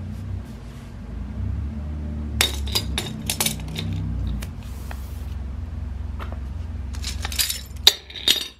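Metal arms of a Gravity Hook 3.0 grappling hook clinking against a pipe wrench as they close on it, a cluster of sharp metallic clinks about two and a half seconds in. Another cluster of clinks comes near the end as the wrench is handled off the hook, all over a steady low hum.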